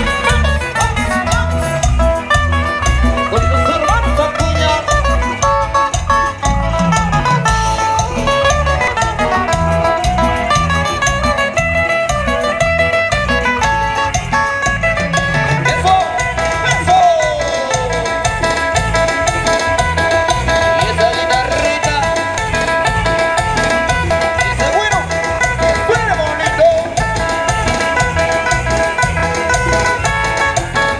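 Amplified live band playing Latin dance music through PA speakers, with guitar over a steady, regular bass beat. A held melody line runs through the second half.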